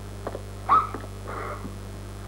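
A woman sobbing in short, high-pitched catches of breath, over a steady low hum.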